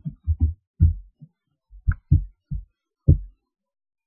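Laptop keyboard being typed on: about nine separate dull keystrokes over three seconds, picked up as low knocks.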